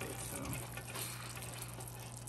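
Lamb chops sizzling in a thick, bubbling pan sauce, a steady patter of small crackles and pops. A steady low hum runs underneath.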